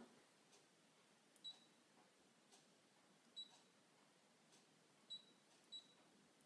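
Four short, faint, high beeps from a Brother ScanNCut's touchscreen as its size buttons are tapped with a stylus: two spaced about two seconds apart, then two close together near the end, in near silence.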